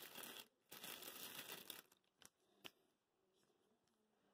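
Faint crinkling rustle of a plastic card sleeve as a trading card is slid into it, in two short stretches, followed by one light click.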